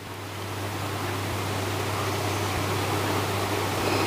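A steady rushing noise that slowly grows louder, over a low hum.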